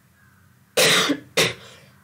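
A woman coughs twice: a longer cough about three-quarters of a second in, then a short one about half a second later.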